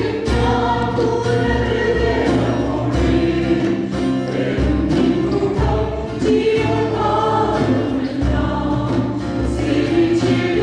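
A church choir singing a praise and worship song, led by women singers at a microphone, over instrumental accompaniment with a steady, pulsing bass.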